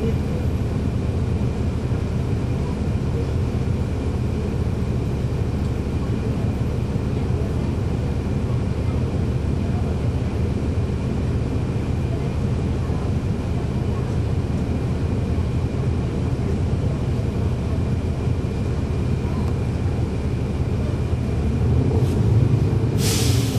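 The Cummins ISL9 diesel of a 2011 NABI 416.15 transit bus, heard from inside the cabin, running steadily at an even pitch with no revving. A faint steady high tone sits above it.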